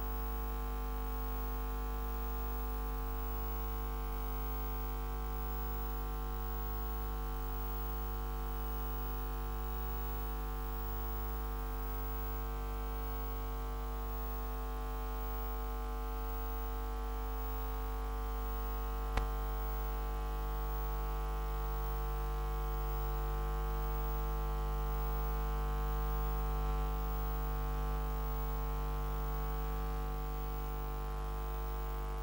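Steady electrical mains hum with many buzzy overtones, with one sharp click about two-thirds of the way through.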